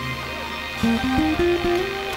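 Guitar playing a short run of single notes that steps upward in pitch, over a steady held backing chord, as the intro to a worship song.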